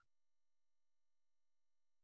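Near silence: a gap between narrated lines in a screen recording, with only a faint steady electronic hum.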